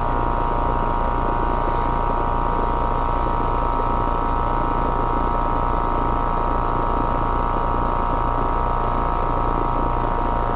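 Outdoor air-conditioning condensing unit running steadily: compressor and condenser fan giving a low hum with a steady high whine over it.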